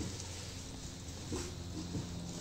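Quiet rustling of nylon straps and fabric as a back scabbard is strapped on, with a short low hum a little past halfway.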